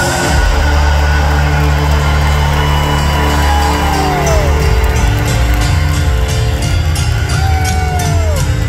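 Rock band playing live through an arena PA, heard from the crowd: loud sustained bass and keyboard chords, with two notes sliding down in pitch and regular cymbal hits coming in near the end.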